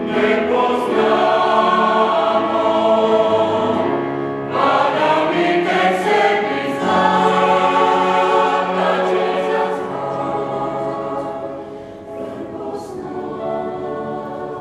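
Mixed choir of men's and women's voices singing in harmony. There is a short break about four seconds in, then the voices come back fuller, and they grow softer over the last few seconds.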